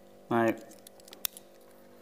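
A small knife being handled over a cardboard box: a few faint metallic clicks and one sharp click a little over a second in, with a man saying "now" just before.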